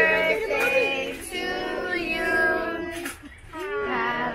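A group of voices, adults and children together, singing a birthday song in long held notes, with a brief drop about three seconds in before the singing picks up again.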